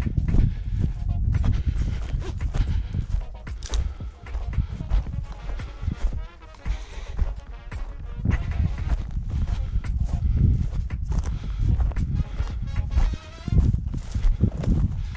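Footsteps through dry grass and brush with wind rumbling on the microphone and scattered handling clicks as the camera sways.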